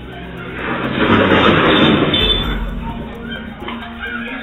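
A motorcycle crashing on a lane: a rush of noise swells up about half a second in and peaks over the next second or so. A low thud comes near the peak, and the noise then fades. Background music plays under it.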